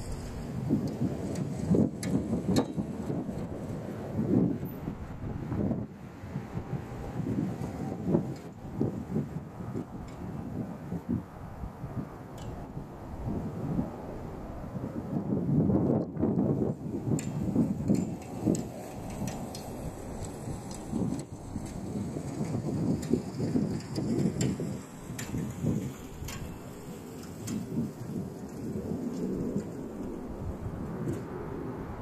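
Strong gusty wind buffeting the microphone: a low rumble that swells and drops with each gust.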